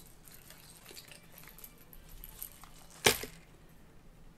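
Small clicks and rustles of fishing tackle (hook, swivel, line) being handled while a rig is hooked onto a foam tube, with one sharp knock about three seconds in, the loudest sound.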